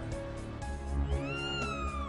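Background music with steady low notes. About halfway through, a long high wailing cry rises in pitch and then falls away, close to a cat's caterwaul.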